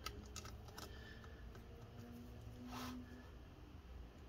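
Faint handling sounds on an open laptop's plastic chassis: a few light clicks and taps in the first second, then a brief rustle of a hand sliding over the case near three seconds.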